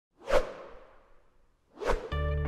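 Two whoosh sound effects accompanying an animated logo: a sharp one about a third of a second in that trails off slowly, and a second just before the end.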